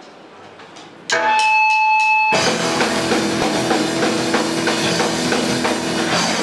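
Live rock band starting a song: about a second in, a held electric guitar chord rings out over a few sharp percussive hits. Then, a little over two seconds in, the full band comes in loud and all at once, with electric guitars, electric bass and drum kit.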